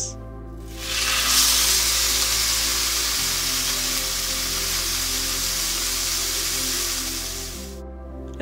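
A wild game roast searing in hot fat in a cast-iron skillet over high heat: a loud, steady sizzle that starts about a second in and dies away near the end. Soft background music plays underneath.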